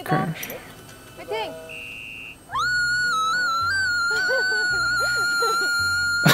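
Audio of a TV variety show: short bursts of voices over background music with a pulsing low beat, then, about two and a half seconds in, a long high tone that swoops up and holds steady to the end.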